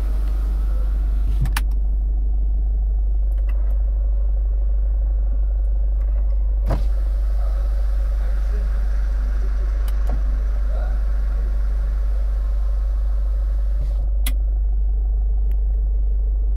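Kia Sportage engine idling steadily, heard from inside the cabin as a constant low rumble, with a few short clicks from the car's interior.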